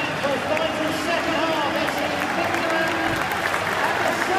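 Stadium crowd noise: many voices talking and calling at once, with scattered clapping, as the players come out.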